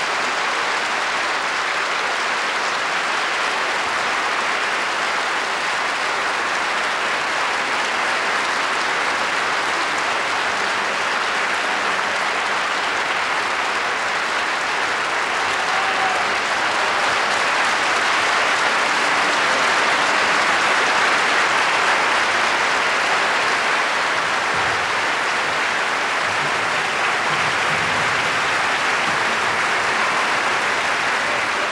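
A large audience applauding steadily, swelling a little past the middle.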